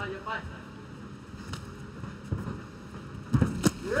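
Sharp thuds of strikes landing in a Muay Thai bout, a few faint ones, then two louder ones close together near the end, the last of them a round kick to the ribs. Under them runs the quiet hum of a near-empty arena.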